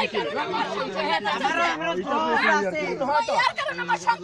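Several people talking at once, their voices overlapping one another.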